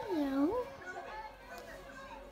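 Speech: a person's voice with a swooping, sing-song rise and fall in pitch in the first half second, then quieter voices.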